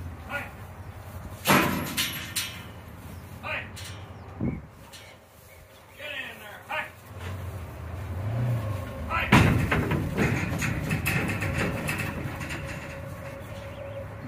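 A Gelbvieh bull loading into a steel stock trailer: a few scattered knocks first, then a loud bang a little past nine seconds in as it steps up into the trailer. After that comes a run of hoof clatter and thuds on the trailer floor, with the trailer rattling, as it walks forward.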